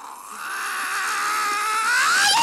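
A man's long, high-pitched falsetto cry, rising at the start and then wavering as it is held.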